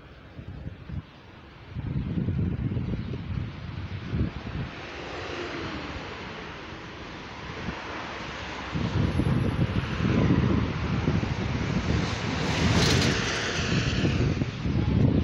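Street traffic passing, with wind gusting on the phone microphone in low, uneven rumbles that come in about two seconds in and again past the middle. There is a short, sharp noise near the end.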